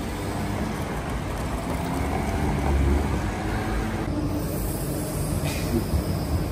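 City street traffic rumble, swelling about halfway through. From about four seconds in, a tram runs past close by on street tracks.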